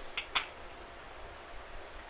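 Telephone-line hiss during a pause in a phone call, with two brief faint sounds near the start.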